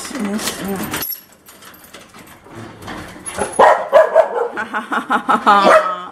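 A dog barking and yipping excitedly in quick short calls, mixed with laughter; the calls get busy from about halfway in.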